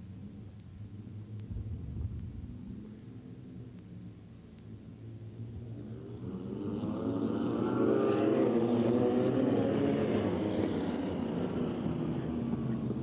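A pack of wingless sprint cars idling around a dirt track on the rolling laps before a race start. Their engines hum low and steady at first, then grow louder from about six seconds in as the field comes past.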